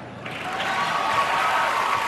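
Audience applauding after a presenter is introduced, swelling quickly from a brief lull in the first half-second to steady clapping.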